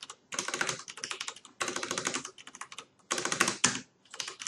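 Computer keyboard being typed on in three quick runs of keystrokes with short pauses between them.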